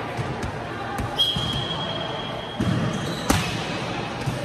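A whistle blown in one steady note for about two seconds, then a sharp smack of a hand striking a light volleyball, with the hall echoing behind it. There are fainter ball knocks earlier, and voices in the hall.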